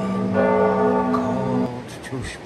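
Church bells ringing, a sustained peal that cuts off sharply near the end.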